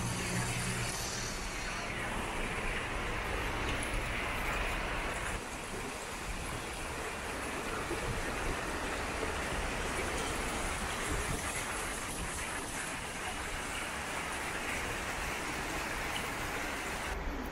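River water rushing steadily through the gaps between the piled stones of an old stone-slab bridge, with the shallow river rippling over rocks alongside.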